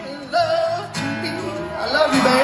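Live band music on stage, led by an acoustic guitar, amplified through the PA.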